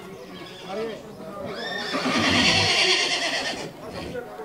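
A horse whinnying: one long, high, quavering call of about two seconds, starting about a second and a half in.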